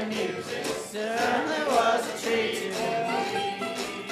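A jug band playing a blues number, a wavering melody line carried over a steady strummed backing.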